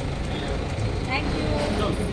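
Outdoor street background: a steady low rumble like traffic, with faint, indistinct voices of people nearby.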